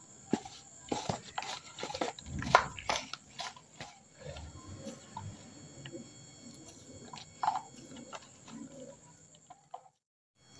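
Hands mixing and kneading wet flour bait dough in a plastic bowl, with water poured in bit by bit: irregular soft taps, clicks and squelches, busiest in the first few seconds and sparser after.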